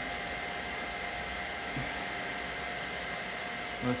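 Anycubic Kobra 2 Max 3D printer's cooling fans running steadily during its auto-level routine, an even whir with a faint steady whine.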